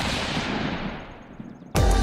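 Channel intro sound effect: a sudden burst of noise that fades away over about a second and a half, then loud music with a beat starts near the end.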